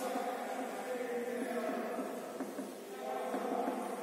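A faint, drawn-out chanting voice, its notes held for a second or so at a time.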